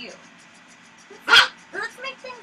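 A dog barks once, a single short, loud bark a little past halfway through.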